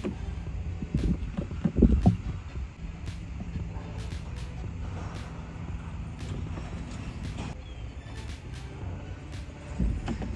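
Clicks and knocks from handling a trailer's plastic propane-tank cover and turning on the tank valve, loudest about a second or two in, over a steady low rumble.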